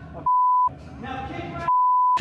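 Two short censor bleeps, each a single steady 1 kHz tone lasting about half a second, that replace the dialogue entirely. They are the usual mark of swearing blanked out. A voice is heard briefly between them.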